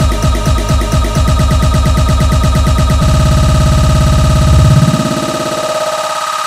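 Electronic dance music from a DJ controller, with a beat loop cut shorter and shorter so the kick repeats faster and faster into a rapid roll. About five seconds in, the bass drops out and only sustained higher tones are left.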